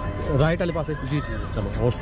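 Men's voices talking in close conversation.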